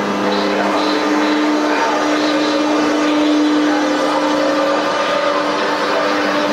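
Czech class 362 electric locomotive hauling a passenger train slowly past, its traction equipment giving a steady whine with a few tones rising slightly in pitch in the second half, over the running noise of the locomotive and coaches on the rails.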